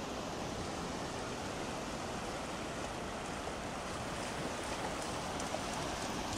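Steady wash of sea surf on a beach, an even rushing noise with no distinct events.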